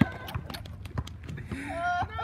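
A basketball dribbled on an asphalt court: a handful of sharp, irregular bounces, with a voice calling out near the end.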